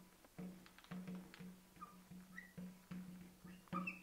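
Marker squeaking on a glass lightboard as a word is written: a faint, low tone that starts and stops with each pen stroke, about ten times.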